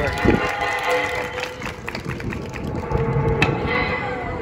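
Wind rumbling on the microphone over faint steady background music, with a few light knocks as the wooden juggling boxes are handled.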